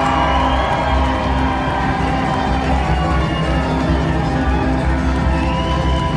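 Live bluegrass string band playing a jam: banjos, acoustic guitars, upright bass, mandolin and fiddle together, steady and full throughout.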